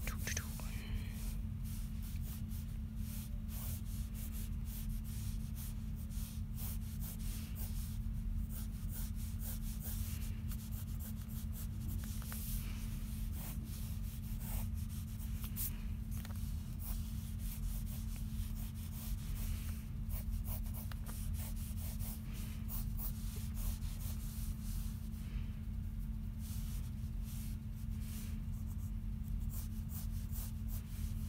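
Pencil scratching across sketchbook paper in many short, quick strokes as lines are drawn, over a steady low hum.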